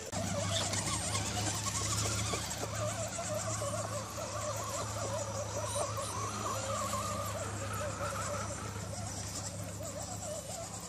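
Electric motors and geartrains of two Holmes Hobbies-powered Axial SCX10 RC crawlers whining steadily, the pitch wavering up and down as the throttle changes while they climb a dirt slope.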